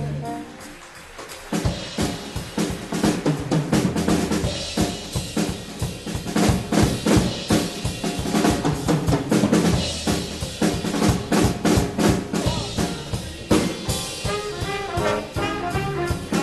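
Drum kit solo in a jazz big band: rapid snare and bass drum strokes with cymbals, starting about a second and a half in, after the band's held note fades. Pitched band parts come back in near the end.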